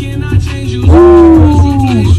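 Music playing loud through a Panasonic stereo system's speakers: a song over a heavy bass beat, with a voice holding one long, slightly falling note in the second half.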